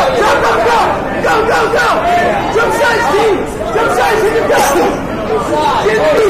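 Crowd chatter and shouting: many voices overlapping, none clear enough to pick out.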